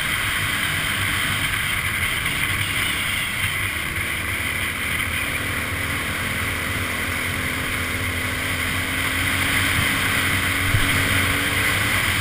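Dual-sport motorcycle engine running at road speed, largely covered by steady wind rush on the bike-mounted microphone.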